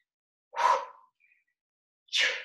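A woman's single short, forceful breath, about half a second in, taken with a flowing arm movement.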